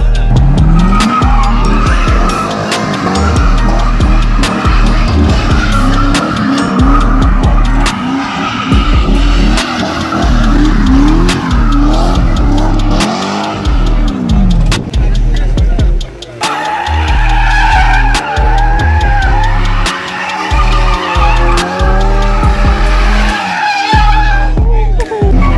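A Chevrolet Corvette's V8 doing donuts: the engine revs up and down while the rear tyres squeal and skid, over music with a heavy bass beat. About sixteen seconds in the sound cuts abruptly to another car spinning its tyres.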